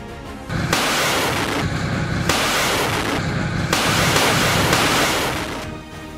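Background music overlaid with a loud rushing noise effect that starts abruptly less than a second in, surges in three blocks, and fades out near the end.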